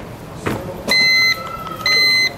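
Two short electronic beeps of the same pitch, about a second apart, from equipment at an airport security checkpoint.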